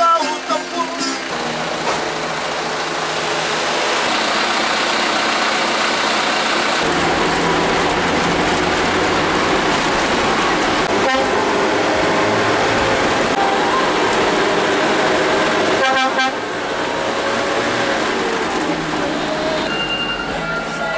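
Intercity bus (Mercedes-Benz 1521 chassis) driving at speed, heard from inside the cabin as a loud, steady engine and road noise, with brief horn toots about 11 and 16 seconds in.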